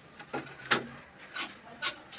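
PVC sewer pipe and fitting handled by hand: four short rubbing, scraping strokes of plastic, the loudest about two-thirds of a second in.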